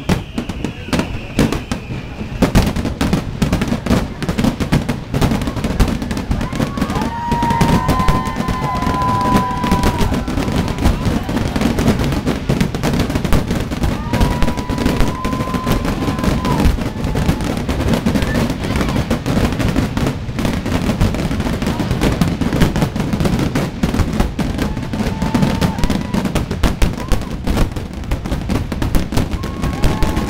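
Fireworks display going off in a rapid, unbroken run of bangs and crackles, with a few brief whistling tones over it.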